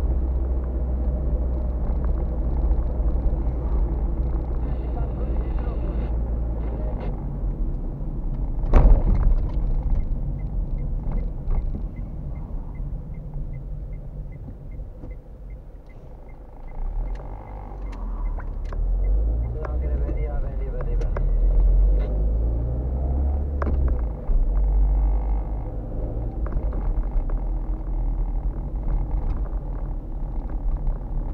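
A car's engine and road noise heard from inside the cabin as it drives slowly. There is a sharp knock about nine seconds in, then a light, steady ticking for several seconds. The engine rumble eases off and then swells again as the car picks up speed.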